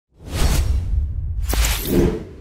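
Whoosh sound effects of an animated logo sting: a rushing whoosh over a deep low rumble, with a second whoosh and a sharp click about a second and a half in.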